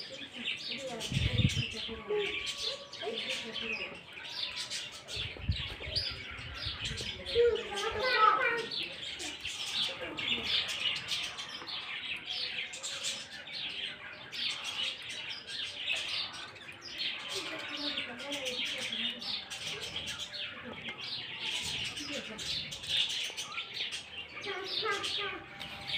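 Many small birds chirping continuously, with a few brief low rumbles about a second in and again around six seconds in.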